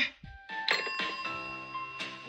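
Gentle instrumental background music: a few held notes come in about half a second in, the first with a bright, bell-like attack.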